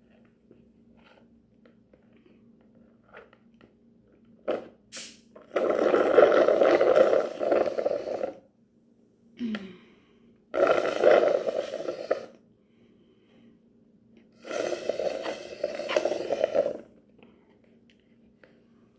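Three long, loud slurps through a plastic straw as the last of a drink is sucked up from the bottom of a foam cup, air and liquid rattling together: the cup is nearly empty.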